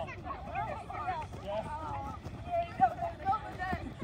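Girls' voices chattering and calling out over the light thuds of feet skipping across artificial turf, with one sharper thud near three seconds in.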